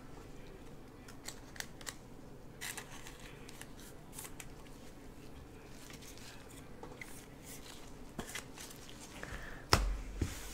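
Gloved hands handling a trading card and a clear plastic top loader: scattered soft plastic clicks and short rustles, with one louder knock just before the end.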